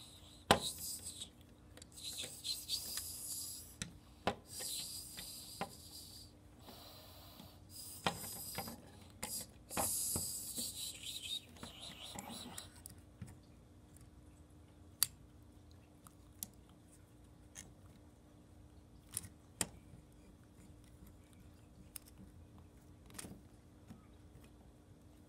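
Rustling and scraping handling noise for about the first dozen seconds, then scattered sharp clicks and taps, one every second or two.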